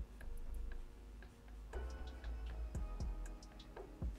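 Felt-tip marker drawing short strokes on paper: light ticks and scratches at irregular intervals over a low rumble.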